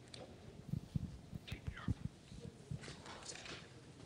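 Faint murmured voices in a quiet room, with soft low knocks scattered through.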